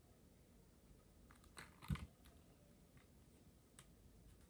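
Near silence with a few faint clicks and one soft knock about two seconds in: plastic doll toys being handled.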